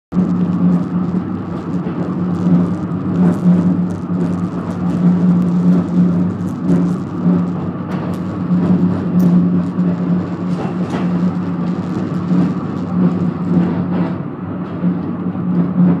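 Fløibanen funicular car running along its rails, heard from inside the cabin: a steady low hum with scattered light clicks and rattles.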